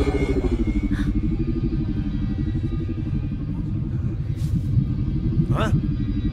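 Animated-film sound effect: a deep rumble with a wavering, pulsing hum that accompanies the hovering black spheres, under dramatic score. A voice says "Huh?" near the end.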